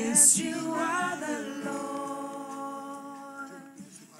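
Unaccompanied worship singing: voices sing one slow, drawn-out phrase, starting with a hissy consonant and holding long notes that fade toward the end.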